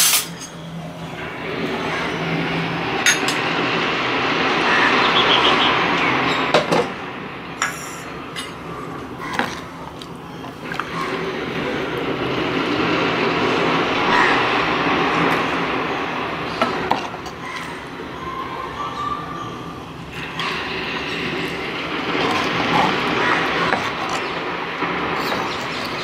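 Steel ladle scooping rasam in a clay pot and pouring it back, heard as long swells of splashing, running liquid with a few sharp knocks of the ladle against the pot.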